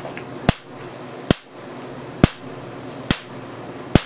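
Marx generator sparking across the discharge electrodes through salt-water mist: five sharp spark cracks, evenly spaced a little under a second apart. The slow firing rate is the sign of the generator being damp from the mist.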